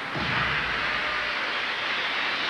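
A steady rushing noise with a low rumble in its first second: a broadcast sound effect under an animated title graphic.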